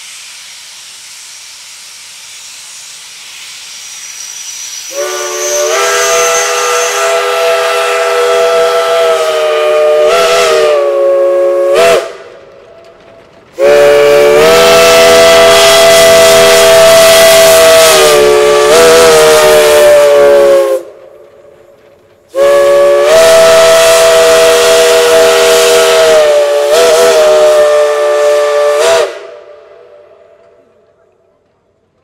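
Shay geared steam locomotive's multi-tone chime whistle. Steam hisses as the valve cracks open, then the whistle sounds three long, loud blasts, each sagging in pitch as it is shut off.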